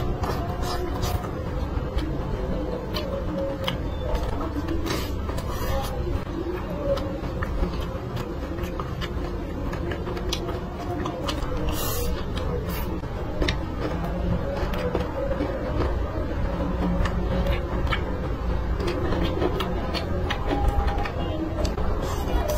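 Close-miked chewing and mouth sounds of someone eating braised pork ribs and rice, with many small clicks and smacks scattered through, over a steady low hum.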